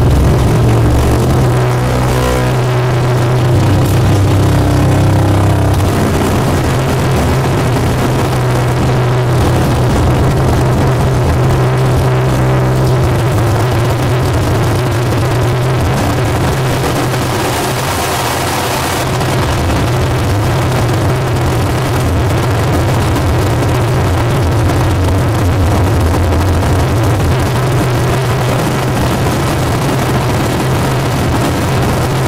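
Harsh noise played live through a chain of effects pedals and a small mixer: a loud, dense wall of distorted noise over a steady low drone. A brighter hiss rises for about two seconds a little past the middle.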